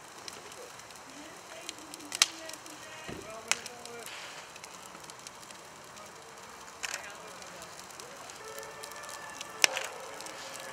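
A car fire burning in the engine compartment and front wheel, giving a steady rushing noise broken by sharp pops about four times. The loudest pop comes near the end. Faint voices are heard in the background.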